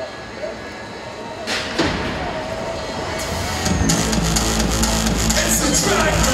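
BMX start sequence: a sharp clang about a second and a half in as the start gate drops, with a single steady electronic start tone held for about two seconds. Music with a beat comes in near the middle.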